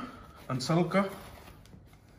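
A man says a short word, then a faint scratching as a knife is drawn through the baked crust of a buttermilk rusk slab in its metal oven tray.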